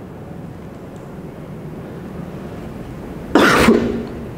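A man coughs once, a single short, loud cough about three seconds in, after quiet room tone.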